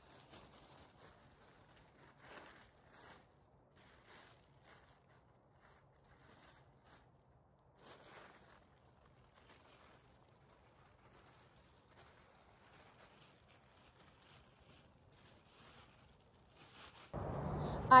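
Faint, scattered crinkling and rustling of a plastic tarp being unfolded and spread on the ground, a few soft rustles over otherwise very quiet audio.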